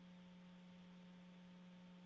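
Near silence, apart from a faint, steady low electrical hum and hiss on the audio line.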